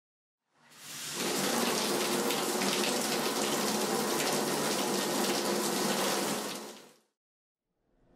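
Shower spray running steadily. It fades in about a second in and fades out near the end.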